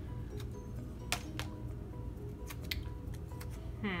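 Quiet background music, with a handful of sharp, light clicks from paper and sticker sheets being handled.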